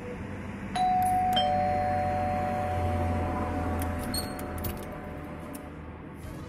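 Two-tone doorbell chime: a higher ding about a second in, then a lower dong about half a second later, both ringing on and fading slowly.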